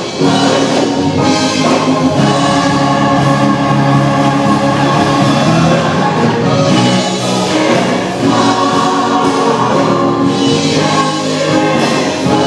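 Gospel choir singing together in sustained, held chords, with brief breaks between phrases near the start and about eight seconds in.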